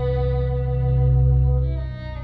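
A violin holds a sustained bowed note, overlaid by live computer-generated tones from a Max/MSP patch that tracks the violin's pitch and plays its overtones in real time. A loud low electronic tone, far below the violin's range, swells to a peak about a second in and falls away near the end.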